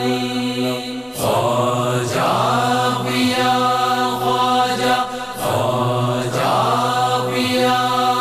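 Sufi devotional song music over a steady low drone, with long held melodic notes that swell into new phrases about a second in and again about five seconds in.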